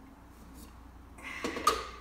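Plastic blender jar and lid being handled on a kitchen counter: a quiet start, then a short clatter about a second and a half in, ending in one sharp click with a brief ring.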